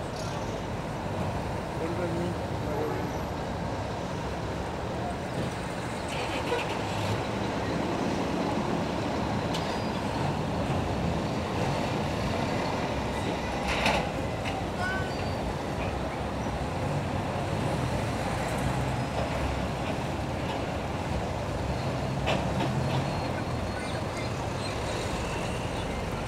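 Mack CH tractor's diesel engine running as the truck pulls slowly away with a loaded lowboy trailer, heard at a distance with people's voices around. A short, sharp sound stands out about halfway through.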